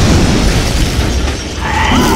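Mine blast explosion: a loud boom with a heavy rumble that carries on after the blast. A higher tone comes in over it near the end.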